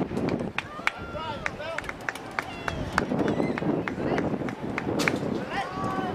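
Raised voices of players and spectators calling and shouting across an open sports field, in short overlapping calls, with scattered sharp clicks.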